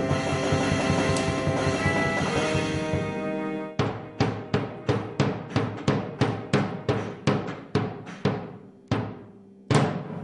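A pupils' ensemble playing: electronic keyboards hold sustained chords, then, a little under four seconds in, a drum struck with a soft mallet takes up an even beat of about three strokes a second that gradually fades, with one more strong stroke near the end.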